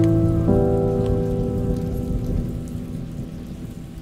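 Slow ambient sleep music: held notes, with a new chord entering about half a second in and slowly dying away, over a steady sound of falling rain.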